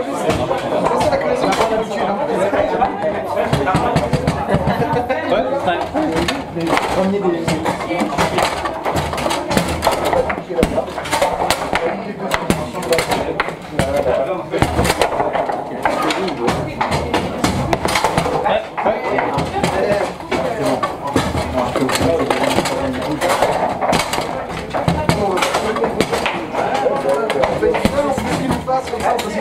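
Table football game in play: the ball and rods repeatedly knocking and clacking against the table, over continuous background chatter from people in the room.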